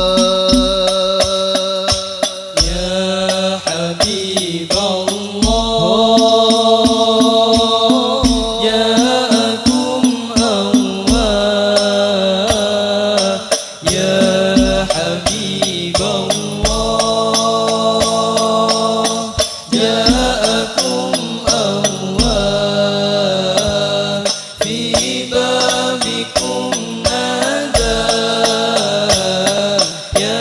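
Al-Banjari sholawat: male voices chanting a sung Arabic melody over terbang frame drums, with frequent drum strokes and a deep bass thump every second or two.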